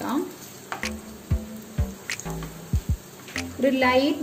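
Banana slices sizzling in hot ghee in a nonstick pan, with several sharp clicks of a wooden spatula against the pan as the slices are turned. A voice comes in near the end.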